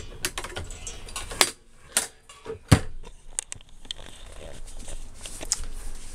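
Fold-down workstation table being handled and folded in a camper van: a run of separate sharp clicks and knocks, the loudest one near the middle.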